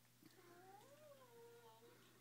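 A faint, drawn-out pitched cry, about a second and a half long, that rises in pitch and then falls away.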